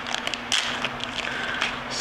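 Small plastic parts bag crinkling and rustling in the hands as it is opened, with a scatter of light crackles.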